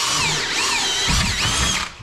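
Power drill boring a hole through a metal bracket with a larger bit, the bit cutting with a continuous wavering high-pitched squeal. The drilling stops abruptly near the end as the hole is finished.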